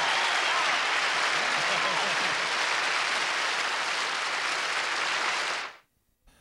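Large audience applauding and cheering after a song, with a few voices shouting over it in the first couple of seconds; the applause fades out quickly near the end.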